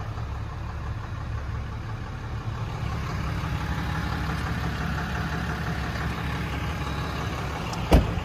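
A 6.7-litre Cummins turbo-diesel inline-six idles steadily with a low drone. One sharp click comes just before the end.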